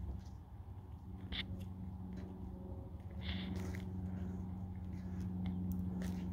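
A steady low hum, with a few faint short rustles and scrapes.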